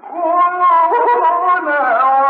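A male Quran reciter's voice in melodic tilawa, singing one long ornamented phrase of held notes that waver and glide in pitch, starting right at the beginning. It comes from an old, narrow-sounding historic recording.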